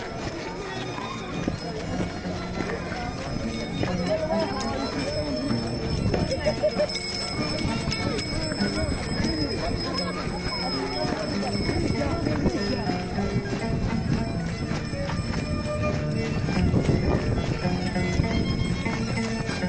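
Chimaycha dance music with voices singing and calling, over the rhythmic stamping of many dancers' feet on packed dirt.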